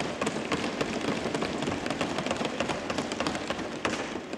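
Applause from a roomful of lawmakers: a dense, steady patter of many claps filling the pause after a line of the speech.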